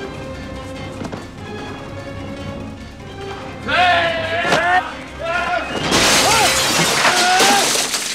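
Dramatic film score over fight sound effects, rising to a loud crash about six seconds in that lasts nearly two seconds.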